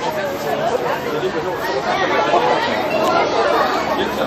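People chattering, several voices talking over one another.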